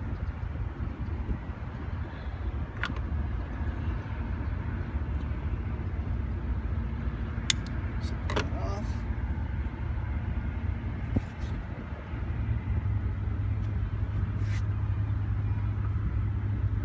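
A low, steady rumble, which settles into a steadier deep hum about twelve seconds in, with a few faint clicks scattered through it.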